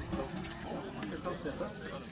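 Speech: a man talking in Swedish at a moderate level, with a few faint clicks.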